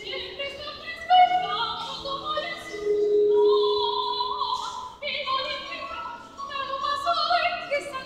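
A woman singing a Spanish aria in operatic style, with vibrato on sustained notes and a long held lower note in the middle.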